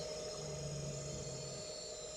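Quiet background with faint steady high-pitched tones, and a low hum that sets in about half a second in and stops near the end.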